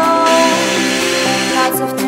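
A power drill bores into wood for about a second and a half, a dense hiss that starts just after the beginning and stops shortly before the end. A pop song plays loudly underneath throughout.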